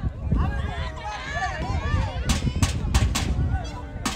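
Shouting voices of players and onlookers at an outdoor football game, then, from about halfway through, a run of sharp claps or knocks in quick succession.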